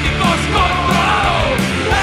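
Punk rock band playing, with a shouted, yelled vocal over loud guitars, bass and drums.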